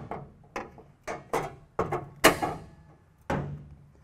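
Sheet metal plate and a steel pry bar knocking and clanking as the plate is worked into position against the panel: a string of sharp separate knocks, the loudest about two and a quarter seconds in, ringing briefly.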